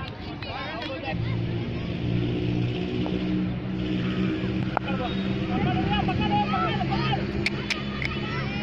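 A steady low engine hum, starting about a second in, with children's voices and calls over it.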